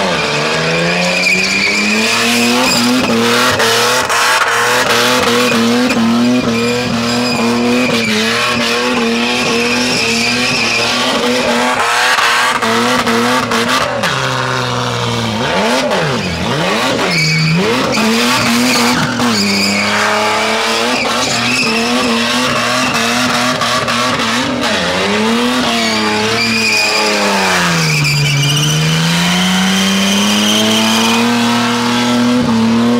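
Supercharged Ford Falcon doing a burnout: the engine is held at high revs while the rear tyres spin and squeal. In the second half the revs dip and climb back several times, most deeply near the end.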